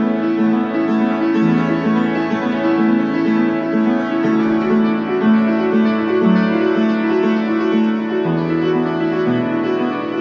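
Solo upright piano playing a flowing piece: a steady pattern of repeated middle-register notes over bass notes that change every few seconds.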